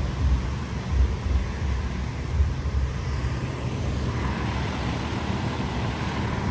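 Street traffic ambience under a low, uneven wind rumble on the phone's microphone, with no single distinct event standing out.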